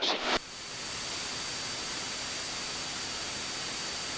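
Steady even hiss of static with a faint, thin high tone running through it: the background noise of the cockpit intercom and headset audio feed with no one talking.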